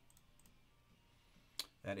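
Quiet room tone with a few faint ticks, then one sharp click a little before a man starts speaking near the end.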